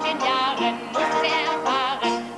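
Schlager song: a man singing with vibrato over a band accompaniment.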